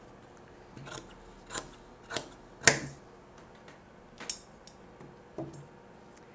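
Scissors snipping through several layers of folded fabric: a handful of separate short cuts, the loudest a little under three seconds in. Near the end comes a metallic clink as the scissors are set into a metal pencil tin.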